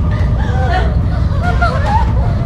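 Several women's voices wailing and crying over each other, the cries rising and falling in pitch, over a steady low hum.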